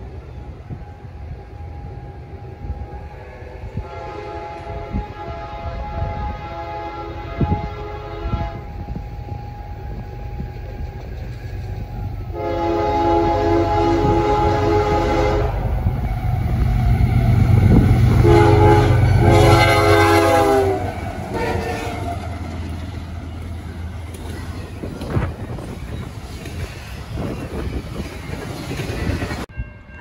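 Air horn of two GE ES44AC diesel locomotives sounding several blasts as the freight train approaches, the loudest and longest group about 17 to 21 seconds in ending with a short blast. Under the horn the diesel engines' rumble builds as they draw near and gives way to the steady rumble and clatter of intermodal stack cars rolling past.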